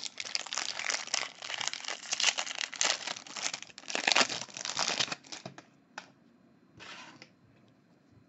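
Foil wrapper of a 2018 Bowman Draft trading card pack crinkling and tearing as it is ripped open, for about five and a half seconds, followed by two short rustles.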